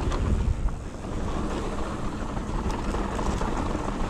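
Wind rushing over an action camera's microphone as a mountain bike rolls fast down a dry dirt trail. Tyre noise on loose dirt runs underneath, with a few sharp clicks and rattles from the bike.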